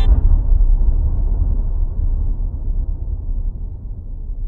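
A deep, low rumble that sets in suddenly and slowly fades away.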